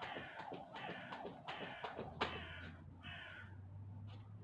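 Skipping rope ticking on paving stones in a quick, even rhythm, while a bird caws harshly several times.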